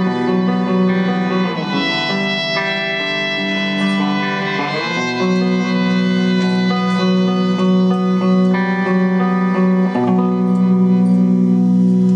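Rock-electronic band playing live: electric violin and keyboards holding long sustained chords, the chord changing three times.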